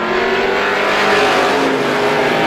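A pack of Strictly Stock short-track race cars running at speed, several engines sounding at once and steady, with small shifts in pitch as they pass.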